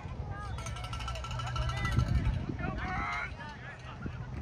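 Distant shouts and calls from players and spectators across an open field, with a burst of several voices about three seconds in, over a steady low rumble of wind on the microphone.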